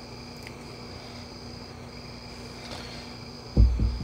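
Quiet background of a steady low hum and a high insect trill that breaks off briefly every second or so. Near the end, a sudden loud low thump, followed by low rumbling.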